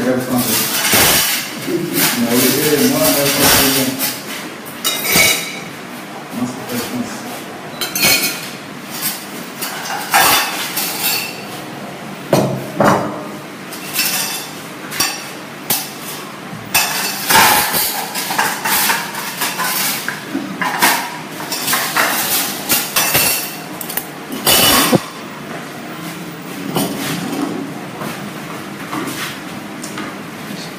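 Spoons clinking against ceramic plates, many short sharp clinks scattered all through, with voices talking in the first few seconds.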